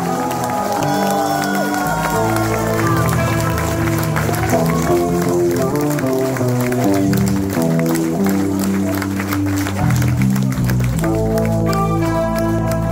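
Live heavy metal band playing an instrumental interlude: electric guitar lead with bending notes over held bass and chord notes that change every second or so, with audience applause.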